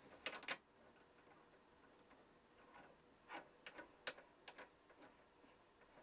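Faint metallic clicks and ticks of small steel parts being handled: the closing ring of a milling cutter chuck being turned by hand on the chuck body, and the threaded-shank cutter in its collet being handled. A few clicks come just after the start, and another scattered group from about three to four and a half seconds in.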